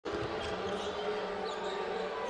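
Live college basketball game sound in a packed arena: a steady crowd murmur with court noise and a few short, high sneaker squeaks on the hardwood.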